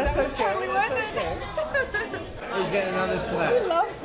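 Several voices talking and exclaiming over one another in a lively room: steady chatter with no single clear speaker.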